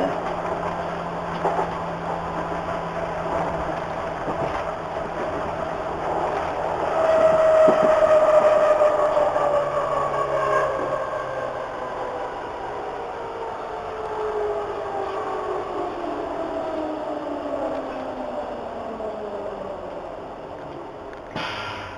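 DT3-E U-Bahn train slowing into a station, heard from behind the driver's cab: a whine from the electric drive falls steadily in pitch as the train brakes, over a steady rumble of wheels on rail. The whine comes in strongest about seven seconds in and fades as it drops.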